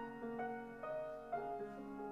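Upright piano playing a slow piece, a new note or chord struck about every half second and left to ring.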